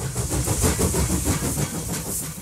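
A train running: a steady rumble with hiss on top.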